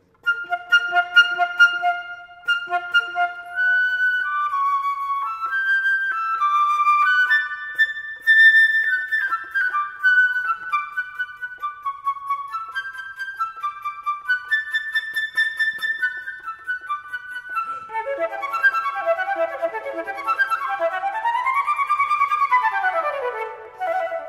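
Solo gold flute playing an arpeggio exercise of scale-based chords: separate, evenly spaced notes stepping through the chords, then fast runs sweeping up and back down near the end.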